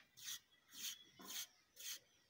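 Steel trowel scraping along the edge of a fresh cement render, in four short strokes about half a second apart.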